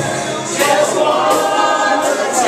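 Church congregation singing together, many voices at once.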